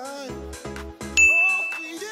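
A single bright chime ding about a second in, struck sharply and held for under a second, the cue to switch sides in the exercise. It sounds over background music with a steady pulsing beat.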